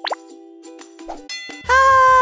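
Soft background music with a quick rising pop sound effect at the start. About 1.7 s in, a girl's voice begins a loud, steady held sung note.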